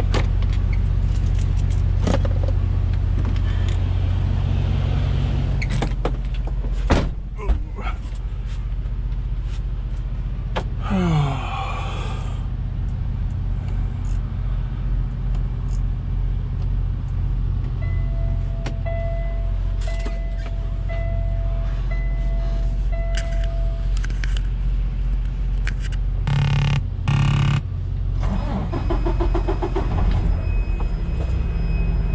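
Semi-truck diesel engine running steadily, heard from inside the cab. Two sharp clicks come about seven seconds in, and a brief hiss follows around eleven seconds. A warning tone then beeps about once a second for several seconds, and a few loud bursts of noise come near the end.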